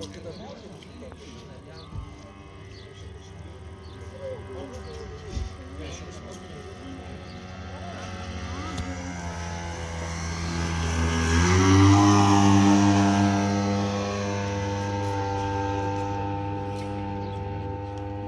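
The engine of a radio-controlled Bücker 131 scale model biplane in flight, giving a steady droning tone. It grows louder as the plane makes a low pass and is loudest about twelve seconds in, and its pitch steps up slightly just before the peak. It then fades a little as the plane climbs away.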